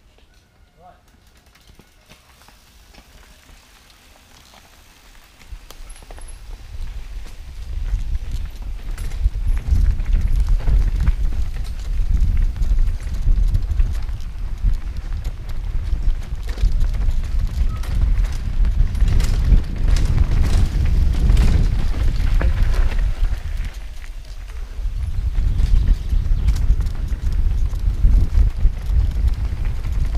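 Wind buffeting the action-camera microphone as it moves fast downhill, building over the first several seconds to a loud, gusty rumble, with scattered knocks and rattles. It eases briefly about three-quarters of the way through, then picks up again.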